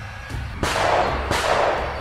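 Sound-effect gunfire: two noisy blasts with long reverberating tails, starting about half a second and a second and a half in, over dark background music.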